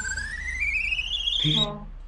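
A comic sound effect: a warbling, whistle-like tone that glides steadily upward in pitch for about a second and a half, then stops.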